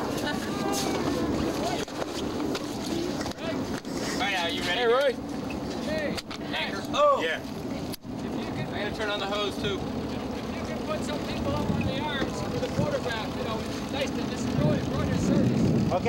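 Scattered voices calling out, with wavering drawn-out shouts, over a steady low hum and outdoor noise. The sound breaks off abruptly about halfway through and picks up again.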